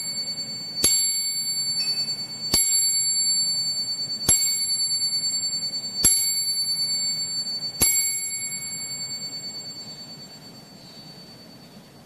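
A small handheld metal bell or chime struck five times at an even pace, about once every second and three-quarters, each strike ringing with clear high tones that fade away; the last strike, about eight seconds in, dies away slowly.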